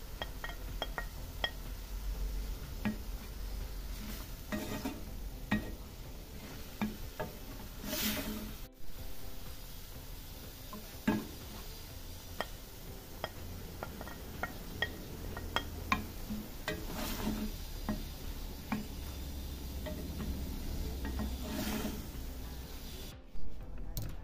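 Ground beef and onion sizzling in a stainless steel pan while a spoon stirs it, with repeated sharp clicks of the spoon against the pan and several longer scraping swells. The sound drops away shortly before the end.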